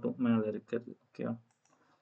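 A man speaking for about the first second, then a few faint mouse clicks in the pause that follows.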